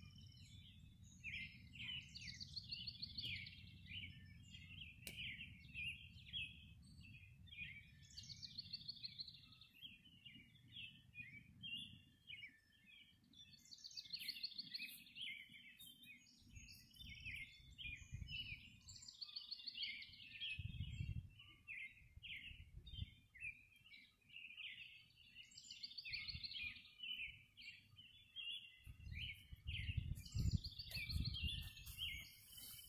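Faint dawn chorus of songbirds: a steady mix of chirps, with one bird repeating a trilled song phrase about every five or six seconds. A low rumble underneath fades out after about ten seconds and returns in patches.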